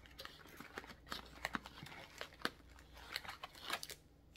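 A box of cleansing eyelid wipes being opened and the wipe packs inside handled: scattered crinkling and small clicks and taps of packaging.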